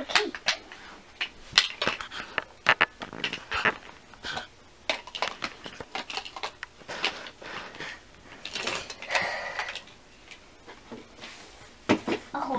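Light plastic toy dishes and play food being handled on a toy table: a run of irregular small clicks, taps and clatters, with some rustling.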